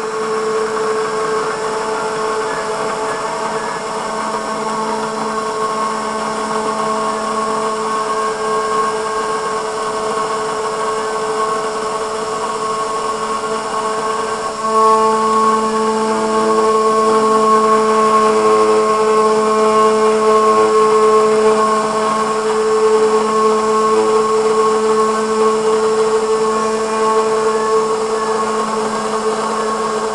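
CNC router spindle running at full speed with a steady whine while its bit engraves the cover of a vape box mod, cutting about five thousandths deep. About halfway through, the sound steps up louder.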